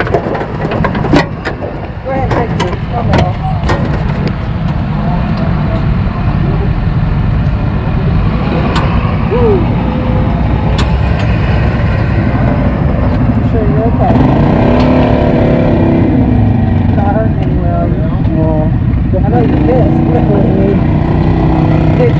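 A vehicle engine running steadily, with a series of sharp clanks and knocks in the first few seconds.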